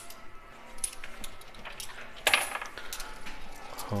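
Metal coins clinking and clattering in a coin pusher machine: several scattered light clicks, with one louder clatter a little over two seconds in.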